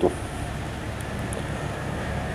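Steady low rumble of outdoor background noise, even throughout, with no distinct single event.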